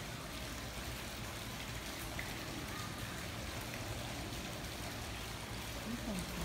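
Steady trickle and splash of water in a small garden koi pond.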